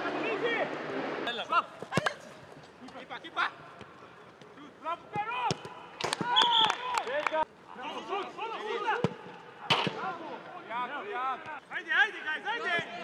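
Footballs being struck with several sharp thuds during a shooting drill, among players' shouts and calls.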